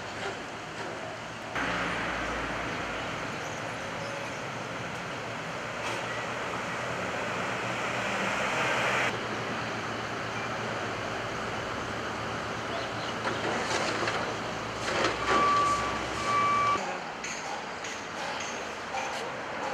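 Street traffic: a vehicle engine running nearby, with a louder stretch of engine and road noise in the first half and two short beeps near the end.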